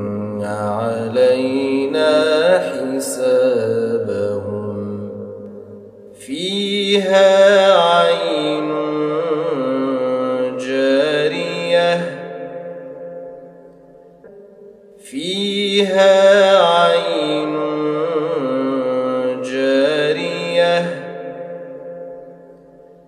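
Quran recitation chanted in a melodic tajweed style: a single voice holding long, wavering notes. After a short pause the same phrase is recited twice, one after the other.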